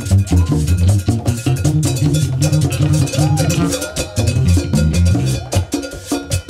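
Live Afro-percussion jam: djembe and conga strokes in a dense, driving rhythm over an electric bass line, with a metallic percussion part on top. A short gliding tone rises and falls about three seconds in.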